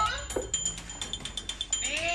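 Baby monkey whimpering in short, high, gliding calls: one rising call ending just at the start, a brief one about half a second in, and another beginning near the end. The monkey is tired and unwell.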